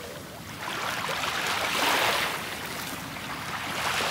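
Small sea waves washing onto a pebble-and-shell shore, the surf noise swelling and easing, loudest about two seconds in.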